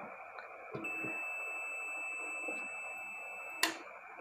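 Sinhwa DT9205A digital multimeter's continuity beeper sounding steadily from about a second in, with the probes across the relay's COM and NO contacts while its 220 V coil is powered and the contacts are closed. Near the end comes a sharp click, and the beep cuts off as the relay loses power and its contacts open.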